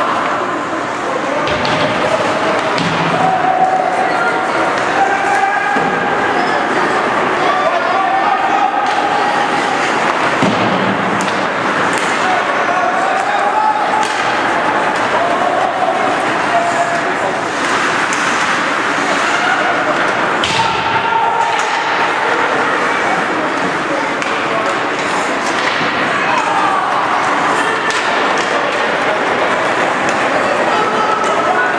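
Ice hockey being played in an arena: indistinct voices calling and shouting throughout, over a steady rink din, with scattered sharp knocks and thuds from sticks, puck and boards.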